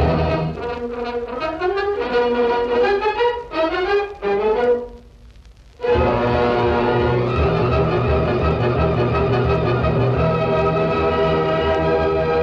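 Orchestral closing theme music with brass: quick rising and falling phrases, a break of about a second just before the middle, then full held chords.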